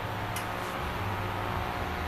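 A single sharp click of carom billiard balls, about a third of a second in, over a steady low hall hum.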